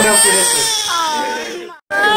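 A baby crying in one long, steady wail that fades and then cuts off abruptly.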